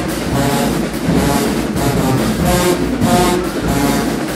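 High school marching band playing loud, repeated brass chords, led by sousaphones, over drums, echoing in a gymnasium.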